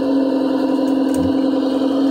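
Simulated diesel engine idle sound from the built-in speaker of a 1:16 Diecast Masters RC Freightliner Cascadia, a steady electronic hum at one fixed pitch. A faint click about a second in.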